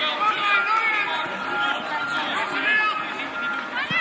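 Young football players and spectators shouting and calling out, several high voices overlapping with no clear words.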